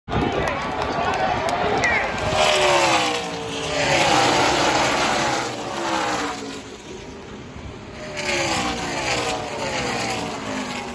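NASCAR Xfinity stock cars' V8 engines passing the grandstand one after another, each engine note dropping in pitch as the car goes by, with a crowd cheering and shouting over them.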